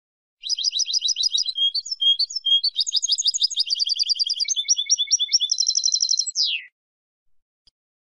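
Female European goldfinch chattering: a rapid run of repeated twittering notes for about six seconds, ending in a quick downward slur. A few faint ticks follow near the end.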